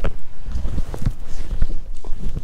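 Handling noise from a handheld camera as it is swung down toward the floor: a low rumble with several soft, irregular knocks and bumps.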